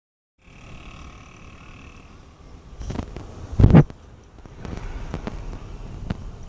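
Mountain bike riding on an asphalt road, heard through a phone held at the handlebars: a steady rumble of tyre and wind noise on the microphone, with a few knocks and one loud thump a little past halfway.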